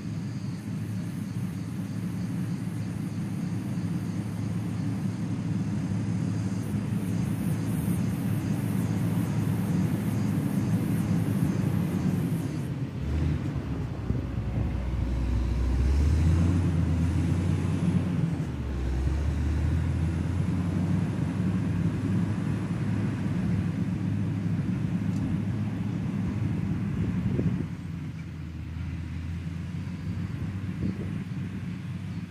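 Caterpillar 120K motor grader's diesel engine working under load, a steady low drone. It grows louder as the machine passes close about halfway through, then eases off as it moves away.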